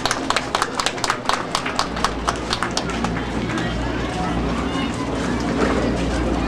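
An audience clapping in time, about five claps a second, which thins out and dies away after about three seconds, over background chatter and a steady electrical hum from the sound system.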